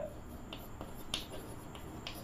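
A few light taps and clicks of chalk against a blackboard as writing begins, with faint room hum underneath.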